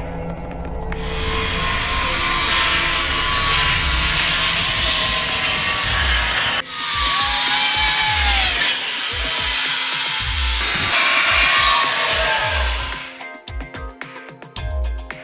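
Background music with a steady beat under a loud rushing whoosh of zip wire riders speeding along the cable. The whoosh breaks off abruptly about halfway through and comes back with a whine falling in pitch, then fades out near the end.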